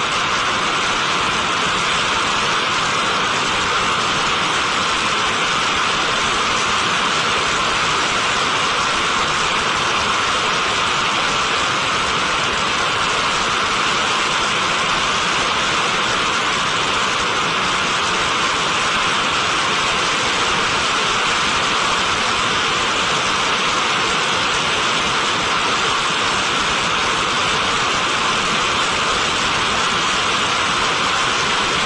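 Ares I five-segment solid rocket booster in a static test firing, mid-burn, its exhaust making a loud, steady rushing noise that does not change.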